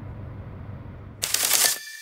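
Low steady rumble of location ambience, cut about a second in by a loud half-second noise burst, a broadcast transition hit, that leads into a single held high tone as the programme's closing music sting begins.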